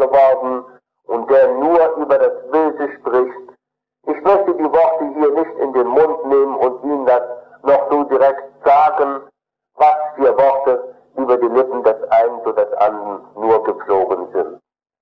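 Speech only: a man lecturing in German, in phrases broken by short pauses, on an old recording.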